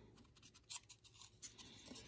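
Near silence with a few faint scratches and rustles of fingers on a stapled cardboard coin flip as it is turned over in the hand.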